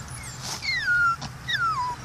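Chihuahua whimpering: two high whines, each falling in pitch, about a second apart.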